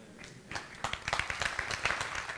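Congregation applauding: many hands clapping, sparse at first and filling in about half a second in.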